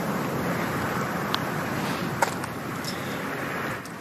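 Steady outdoor noise on the green, with a single light click a little past two seconds in as the putter strikes the golf ball.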